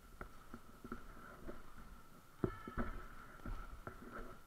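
Footballs being kicked and bouncing on a concrete court: irregular thuds, several a second, the loudest about two and a half seconds in, over a faint steady high tone.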